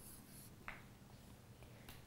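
Near silence with a steady low hum: a stylus on an interactive touchscreen board makes a faint scratch at the start, and there is a single light tick just under a second in.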